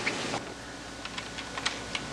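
Typing on a computer keyboard: a few separate, irregularly spaced keystroke clicks.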